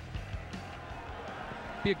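Steady open-stadium noise in heavy rain, a hiss of rain and crowd, with faint music from the stadium speakers under it. A man's voice comes in near the end.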